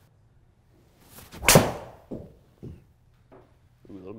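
Golf driver striking a ball at full swing: one sharp crack about a second and a half in, followed by two softer thuds.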